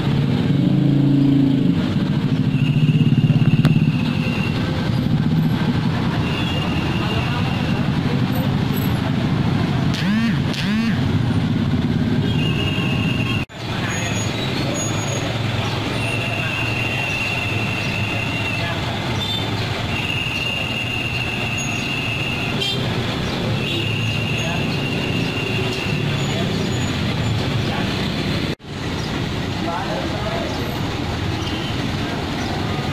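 Diesel trucks running at low speed as they creep past, with road traffic around; the engine rumble is loudest in the first few seconds as a truck passes close. A high steady tone sounds again and again, each time for one to three seconds.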